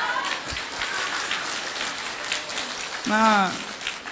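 Audience applauding: a dense patter of many hands clapping, with a brief voice about three seconds in.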